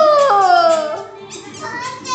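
A child's high-pitched voice calling a long "wooow" that slides slowly down in pitch for about a second, with music playing underneath. A second, shorter high call comes near the end.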